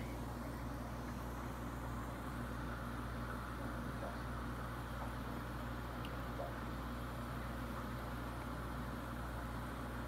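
Steady low hum with a soft even hiss: room tone from running equipment.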